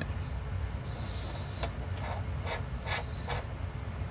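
Faint, scattered clicks of a micro FPV camera and its plastic mounting brackets being handled, over a steady low hum. A brief faint high whistle sounds about a second in.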